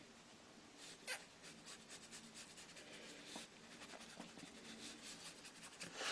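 Near silence: a water brush rubbing faintly on watercolour paper, with one short tap about a second in.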